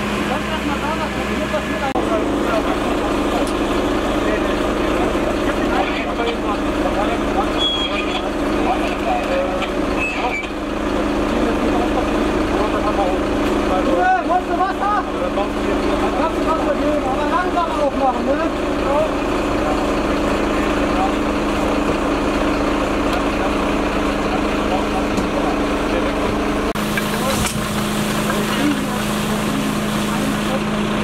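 Fire truck's engine running steadily with a constant hum, with voices in the background.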